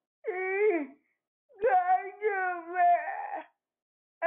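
Speech only: a caller's voice over a telephone line in two drawn-out phrases, the first short and the second longer.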